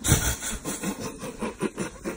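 A man laughing in a rapid run of short, breathy, rasping bursts, loudest at the very start.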